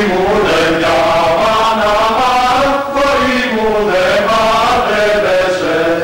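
Mixed choir of men's and women's voices singing a song together in harmony, with a brief break between phrases about three seconds in.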